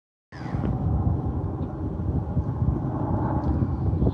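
Wind buffeting the phone's microphone outdoors: an irregular low rumble that comes in about a third of a second in and carries on unevenly.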